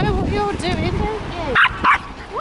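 A small white terrier barks twice in quick succession near the end, two short sharp barks about a quarter of a second apart.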